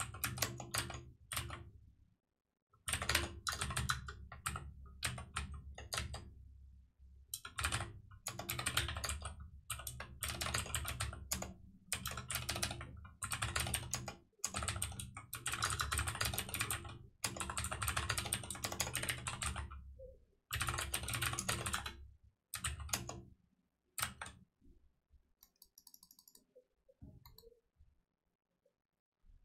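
Typing on a computer keyboard: quick runs of key clicks in bursts of a few seconds with short pauses between them, stopping a few seconds before the end.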